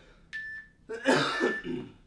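A man coughing and clearing his throat about a second in, out of breath between hard interval exercises, after a brief high steady tone.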